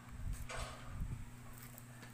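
Faint handling noise from paper and a squeeze glue bottle being worked on a tabletop: soft low thumps in the first second and a few light clicks, over a steady low hum.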